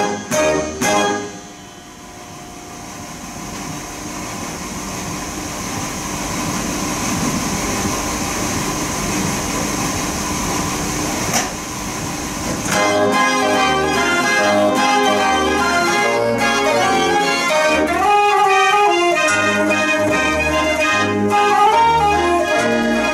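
Theofiel Mortier dance organ playing. About a second in, the tune breaks off into a noisy passage that grows steadily louder for about ten seconds, with a sharp crash near the end. The pipes then come back in with a regular beat.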